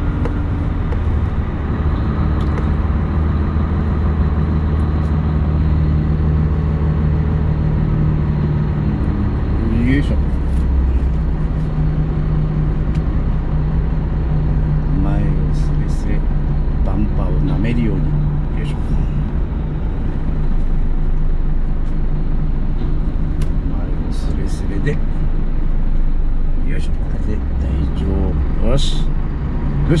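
Tractor unit's diesel engine running steadily, heard from inside the cab while the truck creeps along. Its low drone changes pitch briefly about ten seconds in, and a few short clicks and squeaks come through.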